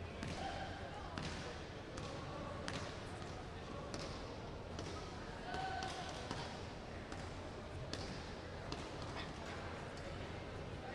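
Sports hall ambience: faint background voices with scattered sharp knocks and slaps at irregular times, echoing in a large hall.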